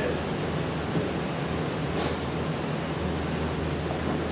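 Steady room tone: a low hum with an even hiss, and two faint clicks about one and two seconds in.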